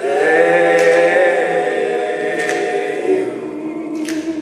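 Male a cappella group singing a sustained close-harmony chord with no instruments. The chord enters together, is held, and slowly fades.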